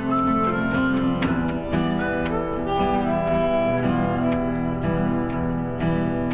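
Instrumental break of an acoustic Americana band: a harmonica plays held melody notes over strummed acoustic guitars.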